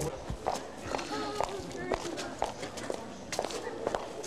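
Footsteps of several people climbing concrete steps, irregular, roughly two steps a second, with indistinct voices in the background.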